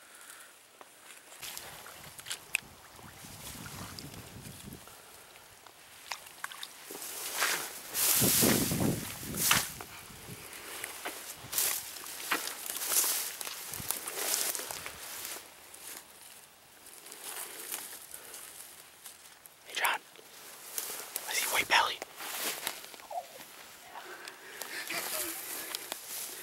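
Dry weeds and brush rustling and swishing against clothing as a person walks through a tall weedy field, with footsteps and irregular louder swishes where stems scrape close by.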